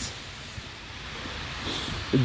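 Steady low rumble and hiss of traffic on a wet street.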